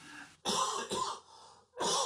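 A man coughing to clear his throat: one short rasping burst about half a second in, and a second one near the end.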